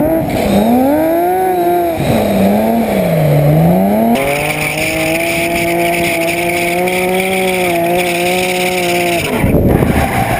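Drift car's engine revving up and down as it slides, then held at steady high revs with the rear tyres spinning and squealing in smoke. The revs and tyre noise drop off suddenly about a second before the end.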